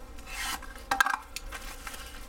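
A cardboard knife box being opened by hand and a folding knife in a plastic bag slid out of it: card rubbing and scraping, with a short sharp sound about halfway through.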